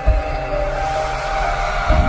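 Dramatic intro music: sustained held tones with a deep hit at the start and another near the end, and a swelling whoosh building between them.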